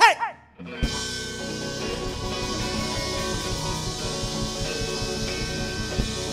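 Live blues band: a short falling sung note, then after a brief gap the band comes back in with a hit under a second in and plays on, with electric guitar and drum kit, in an instrumental passage with no singing.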